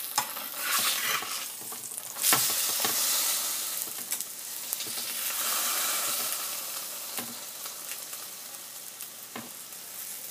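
Qeema-stuffed paratha sizzling as it fries on a tawa (flat griddle), with a slotted metal spatula pressing and pushing it across the pan and clicking against it a few times. The sizzle swells loudest a little over two seconds in and eases off toward the end.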